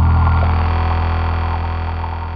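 Closing music: a low synthesizer drone holding steady and slowly fading.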